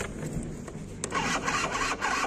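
Electric starter motor of an old Aprilia scooter cranking the engine with a grinding whirr, louder from about a second in, without the engine catching: the battery is going flat.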